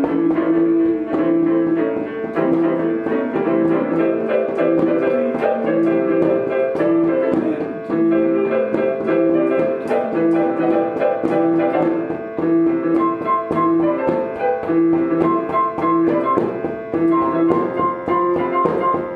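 Improvised piano playing: a repeated two-note figure in the middle register with busier notes moving above it. A high note starts repeating about two-thirds of the way through.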